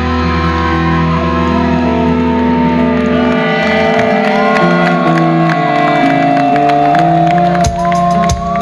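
A metal band playing live through a PA: an electric lead guitar plays a melody with bends over held chords. A deep low note sounds until about three seconds in, then drops away. Drum hits come back in near the end.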